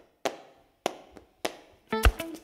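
A slow, even series of sharp percussive hits, about one every 0.6 s, each ringing out briefly, with a fainter extra hit between the third and fourth. Plucked guitar music comes in right at the end.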